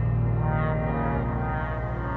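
Slow ambient music: a deep sustained drone with layered held notes, and a higher chord swelling in about half a second in.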